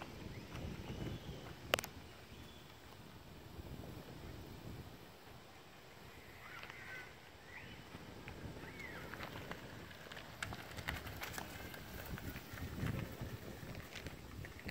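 Faint outdoor background: a low, uneven wind rumble on the microphone, with one sharp click about two seconds in, a few faint short high squeaks in the middle, and scattered small clicks near the end.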